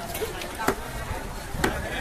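Butcher's cleaver chopping beef on a wooden tree-stump block: two heavy chops about a second apart, with lighter strikes before them.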